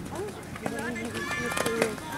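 Several people talking nearby, the loudest sound, over the hoofbeats of a pony cantering on a sand arena, with a few sharp clicks.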